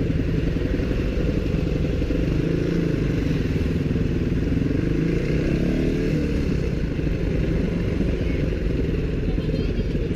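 Dirt bike engine running at low speed in slow street traffic, its note rising and then falling gently with the throttle around the middle.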